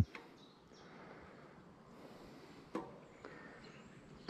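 Quiet outdoor ambience, a faint even hiss of open air, with a brief soft click-like sound about three-quarters of the way through.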